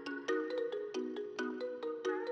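The quiet outro of a bouncy trap instrumental at 136 BPM in D-sharp minor: a synth melody of short chorded notes repeating in a quick pattern, with sharp clicky attacks and no bass underneath.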